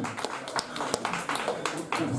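Scattered clapping from a small audience: several irregular claps a second.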